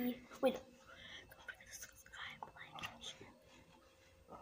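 A girl whispering, soft breathy speech with no clear words, after a short voiced syllable about half a second in.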